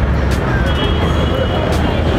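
Street traffic noise: a steady low rumble of vehicle engines under a wash of urban background noise.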